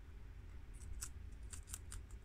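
Guinea pigs chewing romaine lettuce: a quick, irregular run of crisp, high crunching clicks begins a little under a second in, over a steady low rumble.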